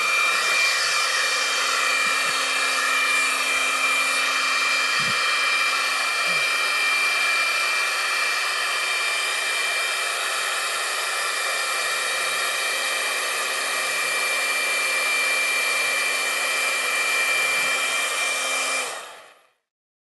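Handheld leaf blower running steadily with a high whine, blowing a stream of air straight up. The sound fades out just before the end.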